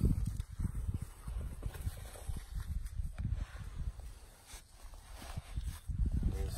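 A Bridger No. 3 foothold trap being pressed and worked by hand into its dug-out dirt bed: irregular soft knocks with scraping of soil, as it is seated flat in the ground.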